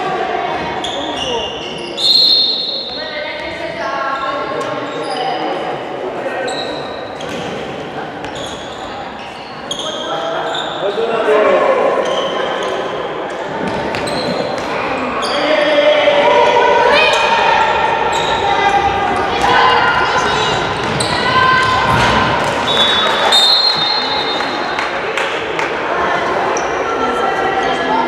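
Handball game in a sports hall: the ball bouncing on the floor amid high-pitched shouts and calls from young players and onlookers, echoing in the hall. The calls grow louder and busier about halfway through, as play moves toward the goal.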